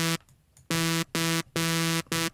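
Bright sawtooth lead from Reason's Thor synth, run through Scream 4 overdrive, an EQ, unison and a compressor, playing short, clipped notes on one pitch: a note cuts off, about half a second of silence follows, then three notes about half a second apart. The compressor's attack and ratio are being turned as it plays.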